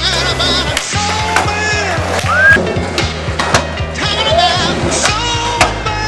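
Skateboard wheels rolling with sharp board clacks and impacts from tricks, mixed under loud background music.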